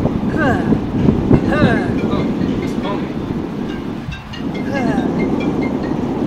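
Steady low rumble of wind buffeting the microphone, with short, high, gliding chirps scattered over it.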